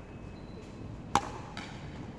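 A single sharp crack of a badminton racket striking a shuttlecock about a second in, with a brief ring after it.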